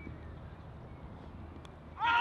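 Quiet open-air ambience of a cricket field with a steady low rumble, and a single faint click of bat edging the ball late on.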